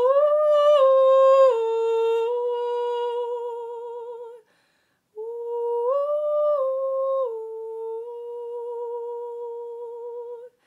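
A woman singing a Madagascan lullaby unaccompanied. Two long, slow phrases, each stepping down through a few notes and settling on a long held note with vibrato, with a short breath pause a little before the middle.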